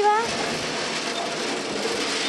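Water-powered gristmill running with maize being fed into its hopper: a steady rushing, grinding noise.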